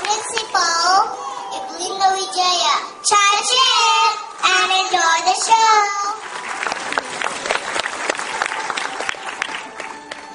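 Young children's high, sing-song voices speaking into a stage microphone, then audience applause starting about six seconds in.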